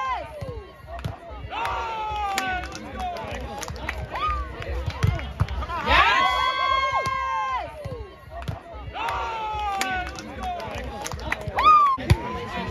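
Volleyball players' loud, drawn-out shouts during a grass volleyball rally, about four long calls that fall in pitch at the end, plus shorter shouts. Sharp slaps of hands on the ball come between them.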